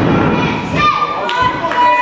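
Several thuds of wrestlers' bodies hitting the wrestling ring's mat, over shouting voices in a large hall.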